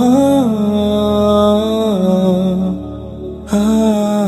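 Nasheed vocals singing a wordless 'ah–oh' line, holding long notes that slide from pitch to pitch over a low sustained vocal drone. The line dips quieter a little under three seconds in, and a new phrase enters about half a second later.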